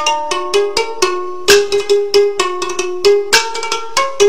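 Instrumental music: a melody on a plucked or struck string instrument, about three crisp notes a second, each ringing briefly.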